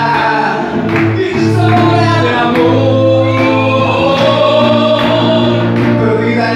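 Men singing a slow song into microphones over amplified instrumental accompaniment with a slow, steady beat.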